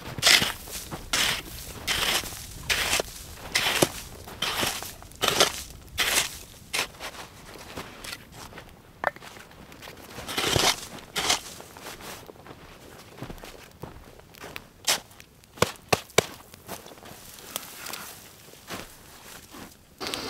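Snow shovel scooping and scraping in snow, a stroke about once a second, with crunching footsteps in the snow. A few sharp knocks or clicks come about three-quarters of the way through.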